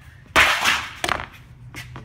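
A large sheet-metal panel flexing and slapping down onto a wooden workbench: one loud burst lasting about half a second, followed by two sharp clicks.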